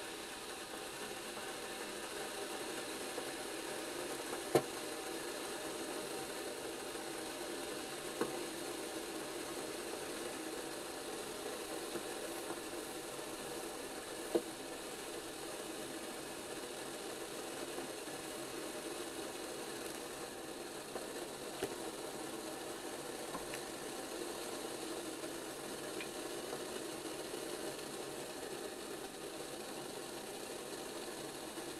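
Stainless whistling kettle heating water over a gel-fuel camping stove: a steady low rushing of the water working up towards the boil, not yet whistling. A few sharp ticks break through it, the loudest about four seconds in.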